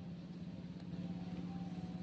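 A motor or engine running steadily with a low, even hum, faint under the quiet surroundings.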